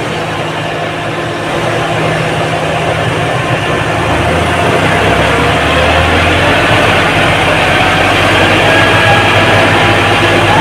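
John Deere 5405 three-cylinder diesel tractor engines running hard under heavy load as two coupled tractors pull against each other, the engine sound building steadily louder.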